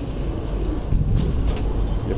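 Steady low rumble of background noise, with a brief click or rustle a little over a second in.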